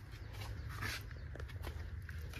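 Rice straw of a straw-mushroom bed rustling and crackling in a few short bursts as the mushrooms are picked by hand, over a low steady rumble.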